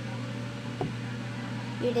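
A steady low hum, with one short click just before a second in.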